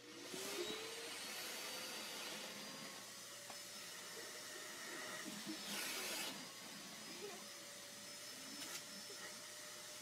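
Vacuum cleaner switched on, its motor spinning up over the first second and then running steadily, with a brief louder rush of air just before the middle.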